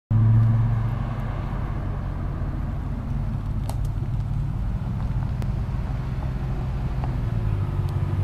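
Steady low engine drone and road noise from a moving car, with a few faint clicks.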